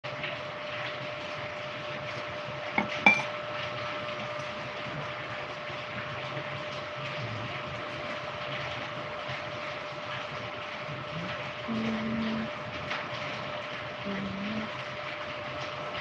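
Metal spoon clinking against a ceramic coffee mug, two quick clinks about three seconds in, over a steady background hum.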